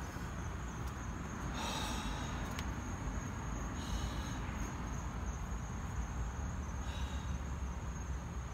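Crickets trilling steadily at one high pitch over a low steady rumble, with three short scuffles as the iguana is handled and pulled free.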